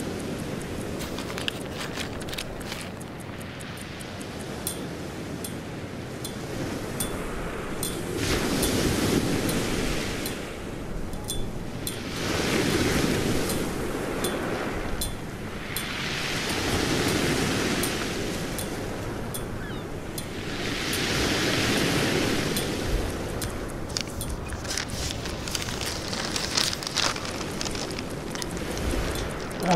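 Waves washing onto a shore: the surf swells and fades in slow surges a few seconds apart, with scattered light clicks throughout.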